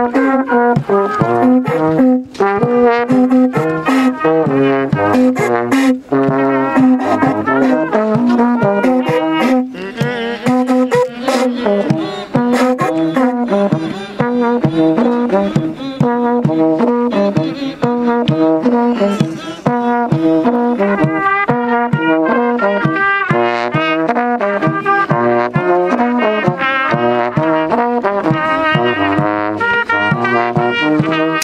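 Brass horns playing a repeating tune of held notes, with percussion strikes beating under them throughout.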